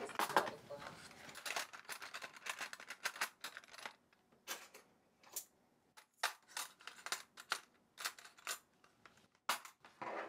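Silver spoons and chopsticks clinking, with wooden spoons clacking, as they are laid into plastic trays in a kitchen drawer. The sound is a quiet, irregular run of light clicks and clinks, a few of them ringing briefly.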